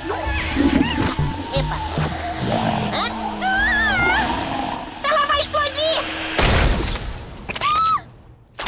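Cartoon soundtrack: music under wordless squeaky character cries and gasps, then a loud wet splat about six and a half seconds in as a giant egg bursts over the characters.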